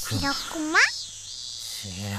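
Short vocal sounds from a cartoon character voice, with no clear words. One call rises sharply in pitch just before a second in, over a steady high-pitched background hum.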